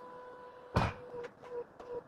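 Koenigsegg Sadair's Spear's powered doors and body panels closing on the key fob's command: one loud thunk just under a second in as a panel shuts, followed by faint clicks. A faint steady tone runs underneath and breaks into short beeps, about three a second, after the thunk.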